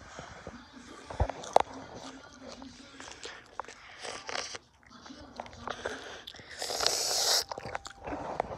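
A person chewing strawberries with whipped topping close to the microphone: irregular wet bites, mouth clicks and smacks.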